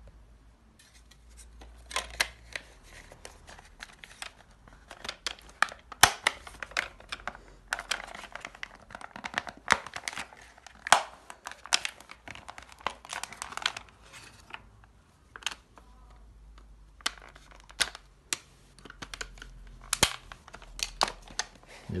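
Hard plastic parts of a Dyson motorised cleaner head being handled and fitted together: scattered clicks, knocks and scraping as the swivel neck is worked onto the head housing to clip in. The handling is busiest through the first half and picks up again near the end.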